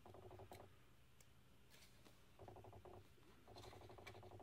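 Near silence: faint room tone broken three times by a brief faint buzz, typical of a camera lens's autofocus motor hunting, with a couple of faint ticks from paper sticky flags being handled.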